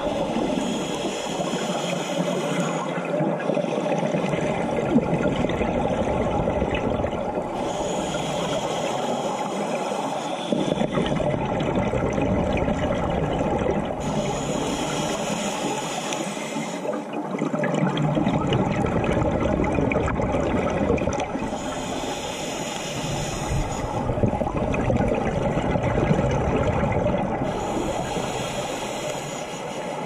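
A scuba diver breathing through a regulator underwater: a hiss on each inhalation alternates with the rumble of exhaled bubbles, in a slow cycle of about five breaths, one every six to seven seconds.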